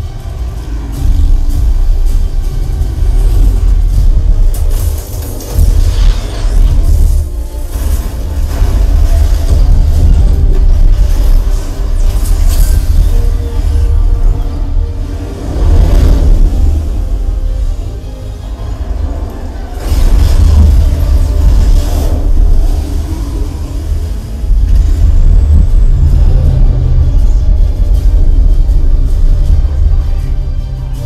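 A film's action soundtrack, music and effects, played loud through a 5.1 home theater system with a Velodyne HGS-12 12-inch sealed subwoofer. Deep bass carries most of the sound, swelling and easing with brief lulls.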